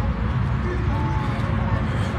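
Distant voices over a steady low rumble.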